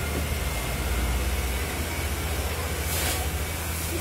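A motor running steadily, with a low rumble and a constant hiss, and a short louder burst of hiss about three seconds in.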